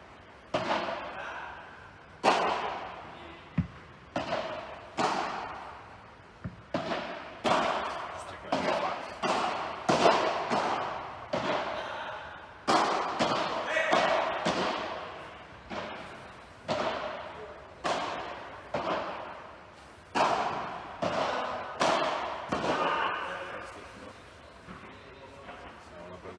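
Padel rackets hitting the ball in a long rally, roughly one sharp crack a second, each ringing on in the large indoor hall.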